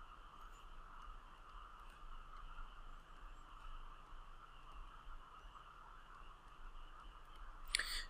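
Quiet room tone with a faint steady high hum, broken by a few faint light ticks of a stylus on a tablet screen during handwriting.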